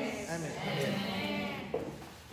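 A woman's voice making a drawn-out, wavering sound without clear words, with a short knock near the end.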